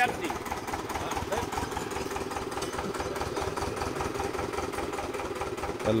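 Small stationary engine of a well-drilling rig running steadily at idle, with an even, rapid knocking beat.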